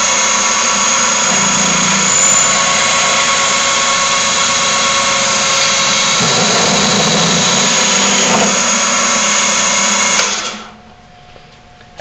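Nine-spindle drill head on a small-horsepower drill press running at 3000 rpm, a loud steady whine of many tones. From about six seconds in, nine quarter-inch bits cut into HDPE plastic and the head slows a little under the load, a sign the drill press is short of horsepower for the job. It winds down about ten seconds in.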